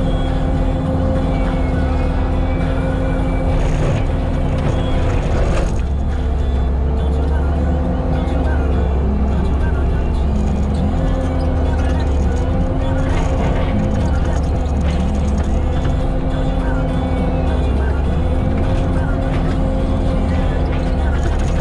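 Bobcat T650 skid steer's diesel engine and Diamond disc mulcher running steadily under load while mulching brush and saplings: a continuous low rumble with a steady hum.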